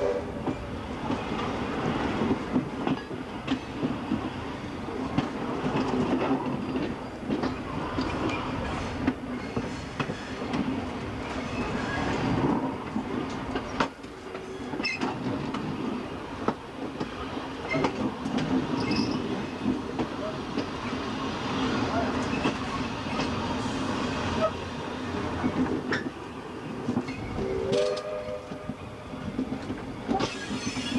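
A train running along the line, heard from on board: a steady rumble of wheels on rail with irregular clicks and knocks over the rail joints. A brief pitched note sounds near the end.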